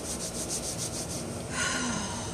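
Palms rubbing briskly together in quick, even strokes, about eight a second, stopping after a little over a second. A brief tone follows near the end.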